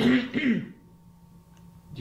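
An elderly woman clearing her throat with a short cough behind her hand, ending within the first second.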